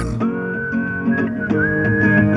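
Music: a whistled melody in long held notes, sliding up slightly about a second and a half in, over plucked acoustic guitar.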